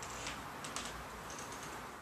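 Faint, scattered light clicks and ticks from a porcelain teapot being swung up and down by its handle.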